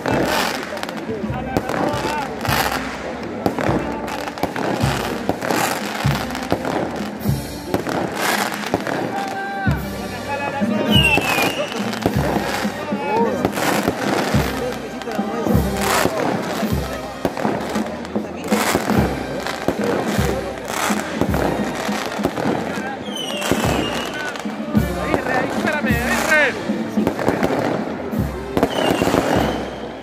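Firecrackers going off in a dense, irregular string of sharp bangs, over the voices of a crowd.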